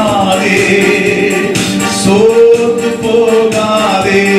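A man singing a Christian devotional song through a handheld microphone, holding long notes that slide up and down in pitch.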